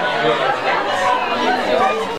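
Several voices talking over one another: speech only.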